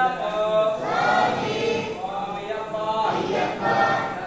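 Group of Ayyappa devotees chanting together in unison, in repeated phrases about a second long.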